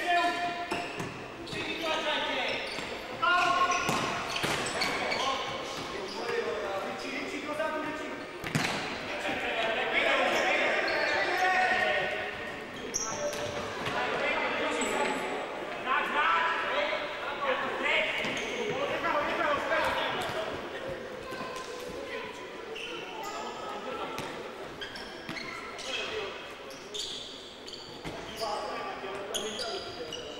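Futsal ball being kicked and bouncing on a sports hall court during play, with voices calling out, all echoing in the large hall.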